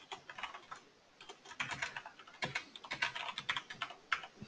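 Typing on a computer keyboard: quick runs of keystrokes, a few at first, a short pause about a second in, then faster bursts.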